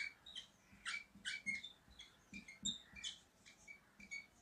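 Felt-tip marker squeaking and scraping on a whiteboard as a word is handwritten: about a dozen short, faint, high-pitched squeaks, one per pen stroke.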